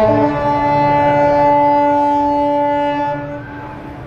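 Cruise ship's horn holding a loud final chord of several steady notes, the end of a played tune. It stops a little over three seconds in, leaving a fading echo.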